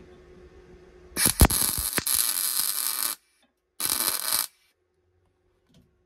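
MIG welder spot-welding a seat belt anchor onto car body steel: one burst of welding about two seconds long, then a shorter burst of under a second.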